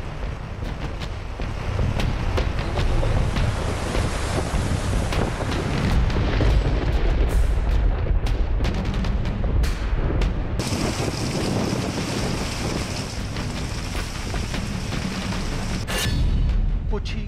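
Strong wind buffeting the microphone with a steady low rumble and rushing rain and sea noise, from the stormy weather ahead of a cyclone. About ten seconds in, a brighter hiss joins.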